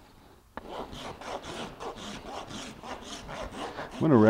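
A farrier's rasp scraping across the bottom of a horse's hoof in repeated back-and-forth strokes, about three a second, starting about half a second in. The strokes level the hoof down toward a black line marked on the sole.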